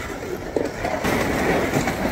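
Small wheels of a hand-pulled cart and cooler rolling over a concrete sidewalk: a continuous rattle that grows louder about halfway through.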